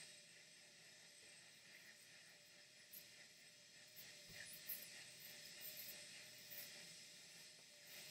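Near silence: a faint background hiss with a faint steady tone under it.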